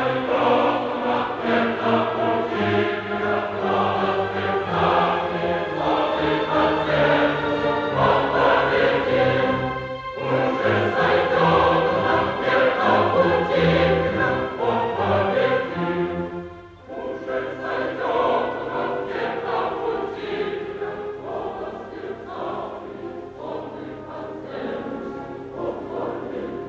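Opera chorus singing in Russian with orchestra. The music drops away briefly about ten seconds in and again around sixteen seconds, then carries on.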